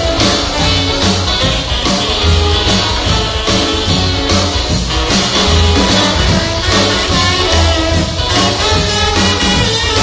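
Rockabilly band playing live: upright double bass, electric guitars and drum kit, with a steady beat.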